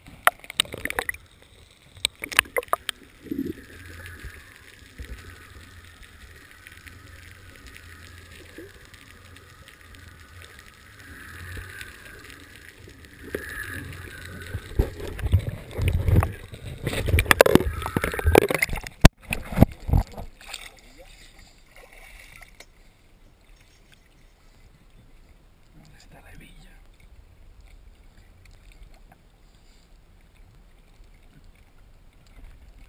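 Water sloshing and splashing around a camera bobbing at the sea surface, half in and half out of the water. It is loudest for several seconds past the middle, with choppy gurgling rushes, then settles to a quieter lapping.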